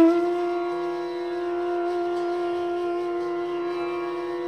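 Bansuri (Indian bamboo flute) in Hindustani classical style holding one long steady note, struck with a sharp attack right at the start. A quieter, lower accompanying tone comes in beneath it about a second in.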